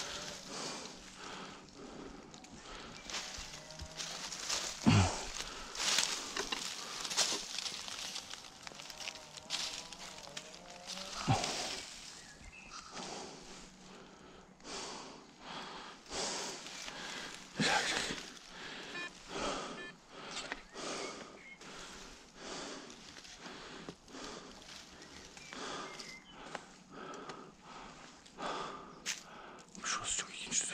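Footsteps and the sweep of a metal detector coil rustling and crunching through dry fallen leaves, in irregular bursts with a few louder crunches.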